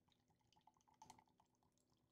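Near silence, with a faint trickle of beer being poured from a can into a glass, slightly stronger about a second in.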